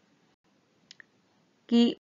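Quiet pause with two faint short clicks close together about a second in, followed by a voice starting near the end.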